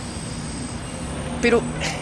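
Steady outdoor street noise: a low hum of traffic with a thin, steady high whine over it, and a man's single short word about one and a half seconds in.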